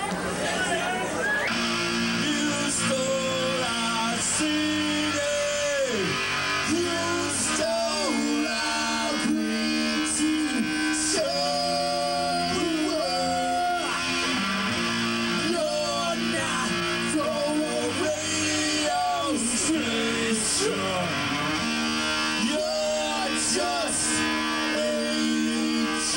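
Live ska band playing the opening of a song, no lyrics yet: electric guitar and drums with horn lines that hold long notes and slide down in pitch.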